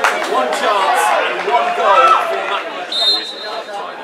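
Spectators' voices at a small football ground, several people talking and calling out over one another, with a short whistle blast about three seconds in.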